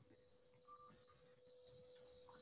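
Near silence: faint room tone on a video call's audio, with a faint steady tone under it.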